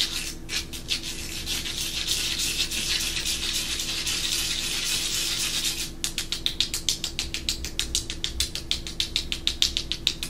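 Fingers rubbing and scratching a caramel rice crisp close to the microphone: a dense, crackly rasp for about six seconds, then a fast, even run of sharp scratches, about six a second.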